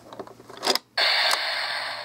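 Anpanman toy bus: small plastic clicks and a sharp click as its roof button is pressed, then about a second of loud hissing from its small speaker, an air-door sound effect for the bus stopping and opening its door.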